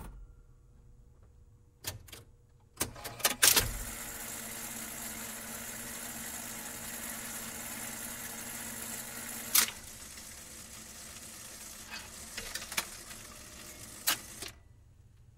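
Jukebox record-change sound between records: a few mechanical clicks and clunks, then a steady crackle and hiss like a stylus running in a record's groove, with further clicks later.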